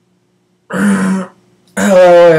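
A person clears their throat once, briefly, about a second in, and then starts talking near the end.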